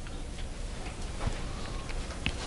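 A few faint footsteps on a hard floor, spaced roughly a second apart, over the quiet hum of a small room.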